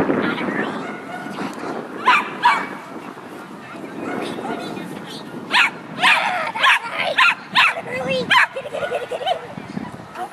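Dog barking in short, sharp barks: two about two seconds in, then a quick run of barks from the middle to near the end.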